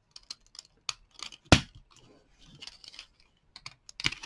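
Scattered light clicks and taps of plastic component carrier tape being pressed onto the sprocket pins of a splicing jig, with one sharper click about a second and a half in.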